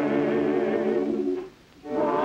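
Church choir singing a hymn in rehearsal, holding a chord that breaks off about one and a half seconds in. After a brief pause the voices come back in at the very end.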